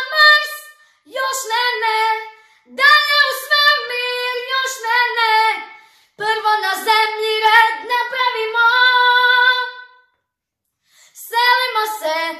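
A young girl singing solo in Croatian with no backing, in sung phrases separated by brief pauses. A silence of about a second falls near the end.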